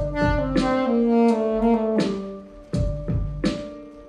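Saxophone playing a downward run of held notes, with a held note continuing through the second half. From about halfway, three sharp knocks sound with it.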